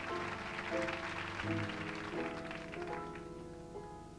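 Grand piano playing the introduction to a song in slow, sustained chords, with applause dying away over the first couple of seconds.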